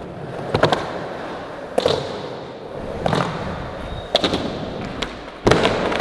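Skateboard wheels rolling on a smooth concrete floor, broken by several sharp clacks and thuds of the board, the loudest near the end.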